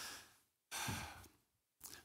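A man breathing audibly into a close microphone: two breaths about a second apart, with no voice in them.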